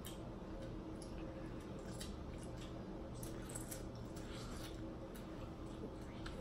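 Faint eating and food-handling sounds: scattered soft clicks and squishes as hot boiled potatoes are picked from a foil pan, broken open and bitten, over a low steady hum.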